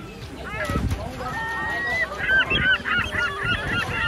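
Birds calling: a few scattered calls and one held note, then a fast run of loud, repeated calls through the second half.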